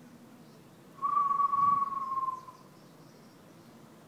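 A person's clear, high whistle-like tone, starting about a second in and held for about a second and a half, sinking slightly in pitch as it fades. It is a healing sound given during an in-water massage.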